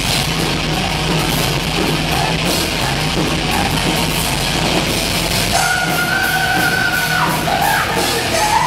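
Heavy metal band playing loud and live: distorted electric guitars over drums. A high held note comes in about five and a half seconds in.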